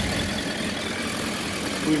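Suzuki Bandit 1250F's inline-four engine idling steadily.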